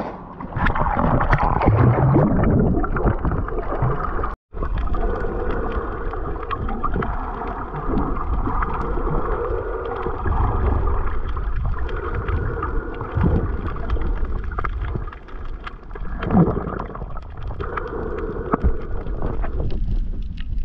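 Muffled, steady water noise recorded with the camera submerged while snorkeling: gurgling and rushing of sea water against the housing, with a brief cut-out about four seconds in.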